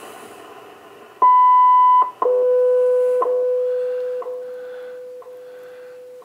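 Shortwave radio receiving the WWV time-signal broadcast: about a second in, a high beep just under a second long marks the top of the minute. It is followed by a steady lower tone, an octave down, with a short tick every second, over faint radio hiss.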